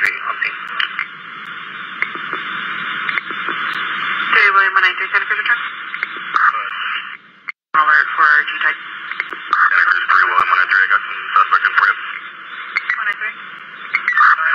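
Police dispatch radio traffic: a hissy, narrow-band radio channel with stretches of garbled, unintelligible speech. The audio drops out completely for an instant about seven and a half seconds in.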